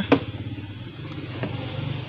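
A car door is pulled open: a short latch click just after the start, then a faint tick, over a steady low hum.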